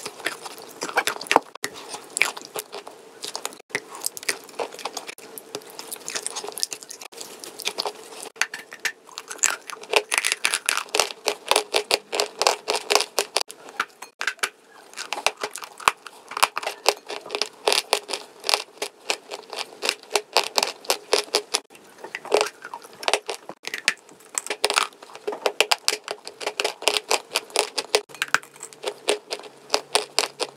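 Close-miked crunching and chewing of chalk pieces coated in clay paste, a dense run of crisp crunches and crackles as the chalk is bitten and broken up in the mouth.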